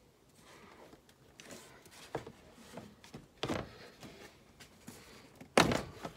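Jeep Renegade's plastic engine cover being handled and pulled off its mounts: a few light knocks, then a louder thud near the end as it pops free.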